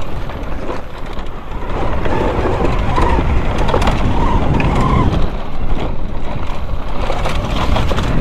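Riding noise of an Altis Sigma electric dirt bike on a loose dirt trail: a steady rush of wind and tyre noise with a faint motor whine, getting louder about two seconds in.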